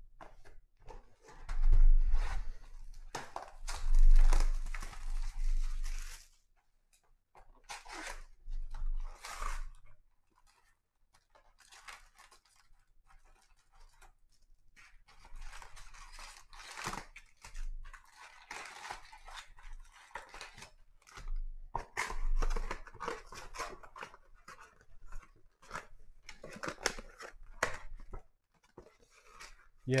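Cardboard trading-card box being torn open and its foil-wrapped packs pulled out and handled: irregular bursts of tearing, rustling and crinkling wrapper noise, loudest around two and four seconds in, with a few low thumps.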